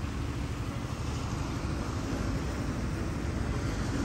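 Steady low rumble of a car running, with even road and air noise.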